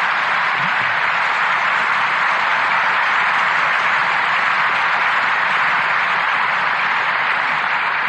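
Studio audience applauding, a steady, unbroken round of applause, heard on an old radio broadcast recording.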